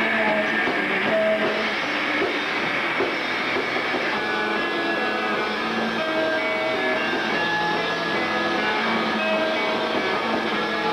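Live noise-pop band playing: distorted electric guitars and drums in a dense, steady wall of sound, with short held guitar notes ringing through it.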